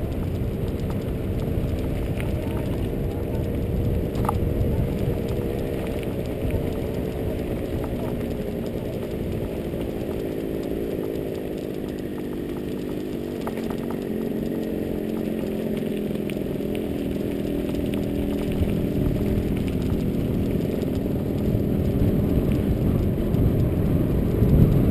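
Mountain bike rolling downhill on a dirt road: a steady rumble of tyres and frame vibration with wind on the mounted camera's microphone. A humming tone drifts slowly up and down in pitch, and a few light knocks come from bumps in the track.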